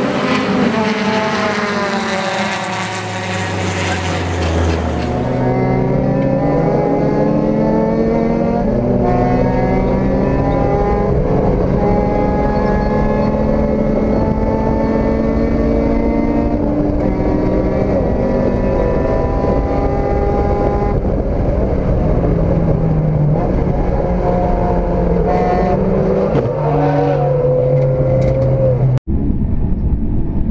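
A race car passes at speed, its engine note falling as it goes by. Then a race car's engine is heard from inside the cockpit at racing speed, its pitch climbing slowly under throttle and dropping at each upshift.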